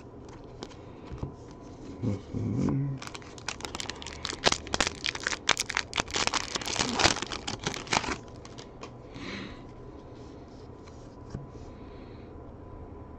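Wrapper of a Bowman baseball card pack crinkling and tearing as it is ripped open by hand: a dense run of sharp crackles lasting about five seconds, from about three seconds in.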